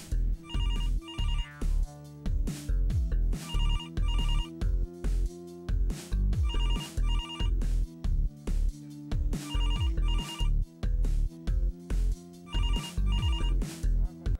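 Electronic music with a heavy bass beat, and over it an electronic telephone ring: a double ring that comes back about every three seconds, five times in all.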